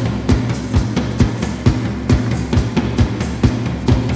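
Background music: a drum-kit beat at about two strikes a second over a steady bass line.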